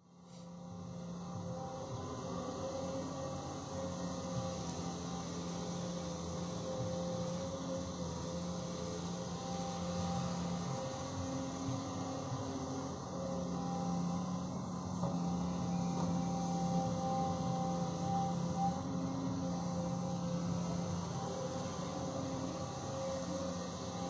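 Caterpillar hydraulic excavator's diesel engine running steadily, its drone swelling and easing in stretches of several seconds as the arm digs and dumps earth.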